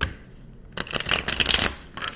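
A deck of tarot cards shuffled by hand: one sharp tap at the start, then a quick run of card flutters lasting about a second that stops shortly before the end.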